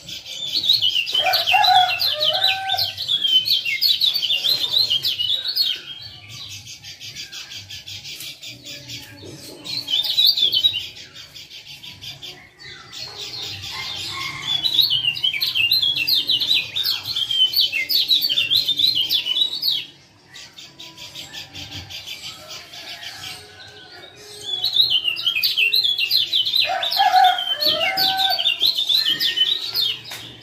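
Male kecial kuning white-eye giving rapid, excited 'ciak ciak' chattering calls in bursts of several seconds, with quieter pauses between the bursts.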